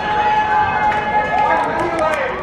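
Voices shouting and cheering in a goal celebration: one long held call, then calls rising and falling in pitch, over a general hubbub of voices.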